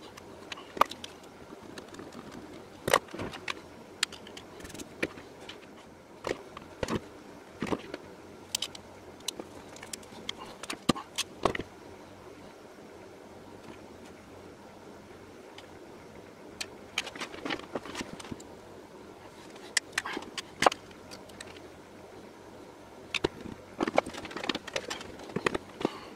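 Small metal connector parts and the antenna body being handled on a desktop: scattered light clicks, taps and small scrapes, coming in clusters with quieter stretches between.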